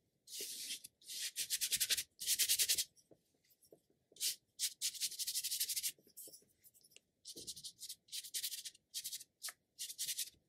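An ink brush scratching across paper in a series of separate strokes, each a short, scratchy swish with a fine crackle of bristles. The first strokes last about a second each; from about halfway they become shorter, quicker dabs.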